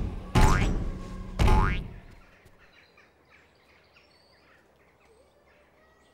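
Two springy cartoon 'boink' boing sound effects about a second apart, each starting suddenly and dying away, marking a cartoon rabbit's hops.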